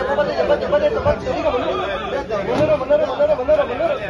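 Several men talking over one another at close range: the chatter of traders crowded around a tomato auction, with prices being called out.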